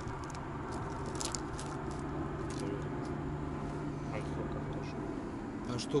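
Soft rustling and scattered light clicks of a shoulder bag being searched and papers handled, over a steady low hum.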